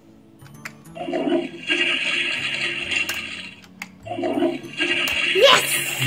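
Toilet Trouble toy toilet playing its flushing sound twice as its handle is pressed, each flush lasting about two seconds.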